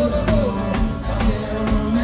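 Live pizzica folk band playing: tamburelli frame drums beating a fast even pulse of about four strokes a second, over accordion, guitars and bass holding sustained pitched lines.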